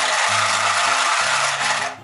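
Handheld sewing machine running steadily as it chain-stitches through denim, cutting off just before the end.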